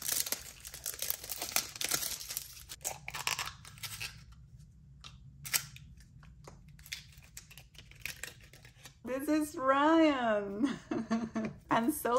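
Thin plastic wrapping crinkling and tearing as it is peeled off a plastic toy capsule, followed by a few light plastic clicks and taps as the capsule is handled and opened. Near the end a voice swoops up and down in pitch.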